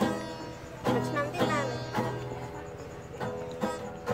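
Steel-string acoustic guitar strummed by a beginner: a handful of separate strums at uneven intervals, the chord ringing on between strokes.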